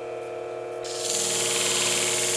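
Bench shear-sharpening machine's motor humming steadily, then about a second in the steel shear blade meets the spinning abrasive plate with a loud, bright grinding hiss as the convex edge is sharpened.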